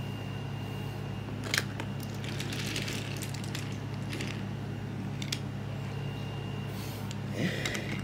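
Steady low hum of the room, with a few sharp light clicks about a second and a half and five seconds in and a short rustle in between.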